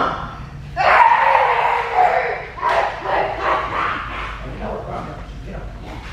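A young woman imitating a dog with her voice: a long, wavering whine about a second in, followed by several shorter dog-like yelps.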